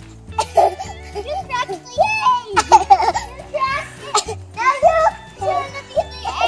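Young girls squealing, laughing and calling out while they play, over background music with a repeating bass line.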